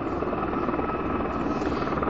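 Steady drone of aircraft engines running nearby, heavy in the low end with a faint steady whine above it.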